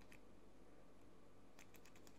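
Faint clicks of small scissors working at the fishing line to trim the tag end of a finished FG knot, a few close together near the end; otherwise near silence.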